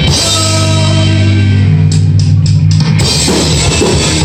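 Live pop-punk band playing: electric guitar, electric bass and drum kit through a PA. A chord rings out for about three seconds, then the beat and riff pick back up near the end.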